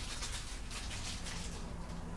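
Small plastic sauce sachets rustling and crinkling in the hands as they are torn open, over a steady low room hum.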